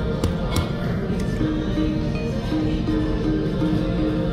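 Video keno machine drawing its numbers: a short beep for each number, about three a second from a second and a half in, over a loud casino din with music.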